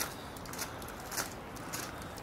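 Footsteps on a gravel path at a steady walking pace, about two steps a second, over a steady background rush.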